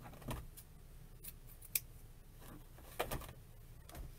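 Scissors cutting ribbon off a spool, with the ribbon rustling as it is handled: a few short, sharp snips spread over the seconds.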